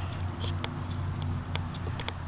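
Echo PB-2520 handheld blower's primer bulb being pressed repeatedly, giving a few faint soft clicks, to prime the two-stroke engine for a cold start. A steady low hum sits underneath.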